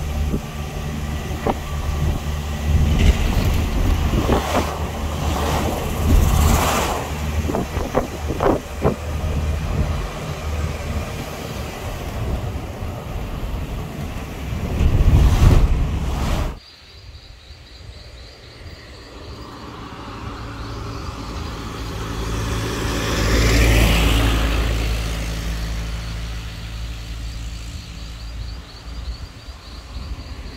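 Engine and road noise of a moving car, a steady low rumble heard from inside the car. The sound drops suddenly a little after halfway, then swells to a peak and fades again.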